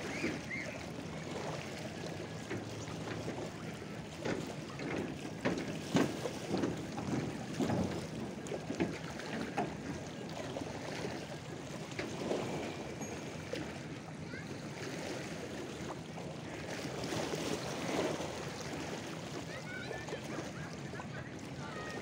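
Small lake waves lapping and splashing against the shore in uneven splashes, busiest a few seconds in.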